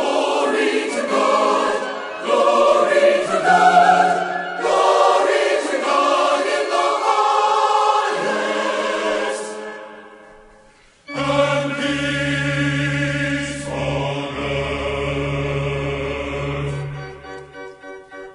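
Choir singing with organ accompaniment. The music fades out around nine to ten seconds in and starts again about a second later over deep held bass notes.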